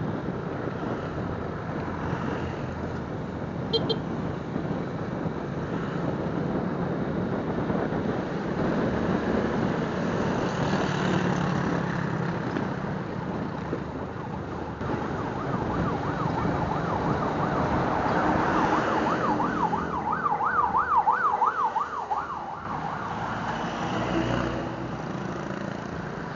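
Steady road and wind rush from riding along on a motorcycle, with a short high beep about four seconds in. From about two-thirds of the way through, a fast yelping siren rises and falls about three times a second, loudest just before the end.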